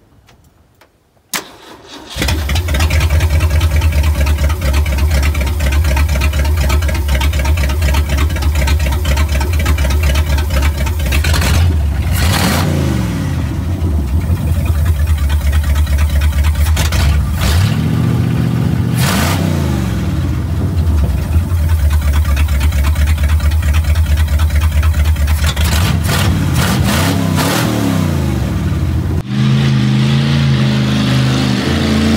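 A Ford 390 V8 is cranked and starts about two seconds in, then runs loudly and is revved up and back down several times.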